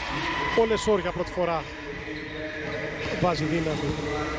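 A man's voice giving TV basketball commentary, over the background sound of the game.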